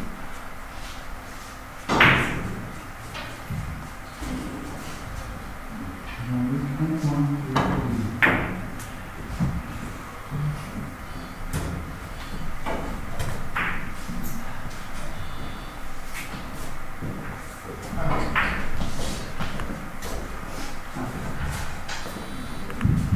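Carom billiard balls struck by cue tips and clicking against each other: a handful of sharp, separate clicks several seconds apart, with low murmured voices in a large hall.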